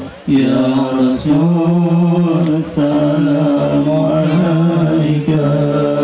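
A man's voice chanting an Islamic sholawat over a PA loudspeaker, the Arabic phrases drawn out in long held, melismatic notes that break every second or two.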